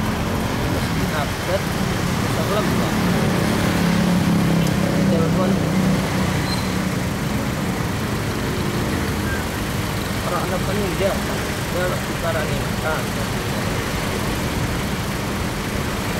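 Road traffic noise in slow, congested city traffic: motorcycle and car engines running at low speed, with a steady low engine drone that is strongest in the first half and eases off after it.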